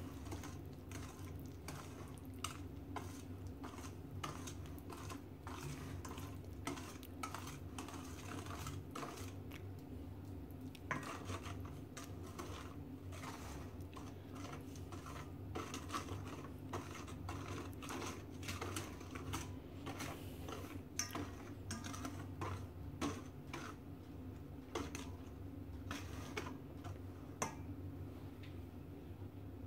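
Wire balloon whisk stirring a thick melted butter, cocoa and brown sugar mixture in a stainless steel bowl, with irregular light clinks and scrapes of the wires against the metal. The sugar is being whisked until it dissolves. A faint steady low hum sits underneath.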